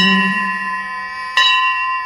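A bell struck twice, about a second and a half apart, each strike ringing on with steady, clear high tones, in a break between chanted devotional verses. A low drone fades out under the first ring.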